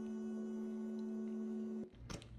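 A single steady musical tone held at one pitch, cutting off abruptly near the end.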